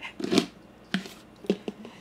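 Black plastic screw lid being cranked down tight on a wide-mouth glass fermenter jar (a Little Big Mouth Bubbler), giving a few short clicks and scrapes from the threads and hands.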